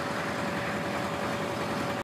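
Caterpillar 928HZ wheel loader's diesel engine idling steadily just after a cold start at 31°F, not yet warmed up. An even low idle pulse runs under a thin, steady high whine.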